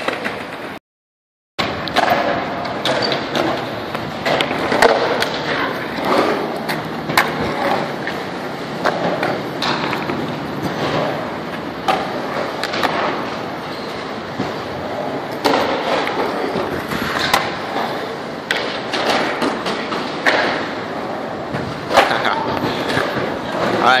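Skateboard wheels rolling over concrete ramps and bowls, with repeated clacks and thuds of boards hitting the concrete. The sound cuts to silence for under a second near the start.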